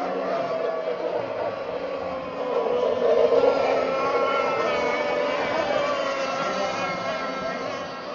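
Radio-controlled racing boat running flat out, its motor's high-pitched note slowly rising and falling as it runs the buoy course, loudest about three seconds in.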